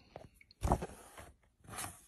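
Two brief, quiet rustles of handling noise: a hand moving over the book's page, about half a second in and again near the end.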